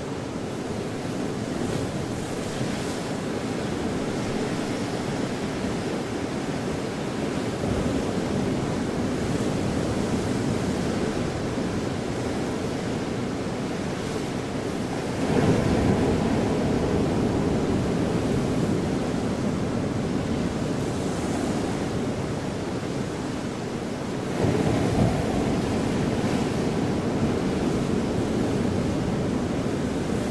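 Steady rushing noise like ocean surf, swelling louder about halfway through and again near the end.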